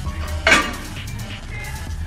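Background music, with a single sharp metallic clank of gym weights about half a second in that briefly rings out.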